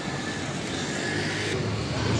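Steady rushing noise of city street traffic, with a faint thin high whine that stops about one and a half seconds in.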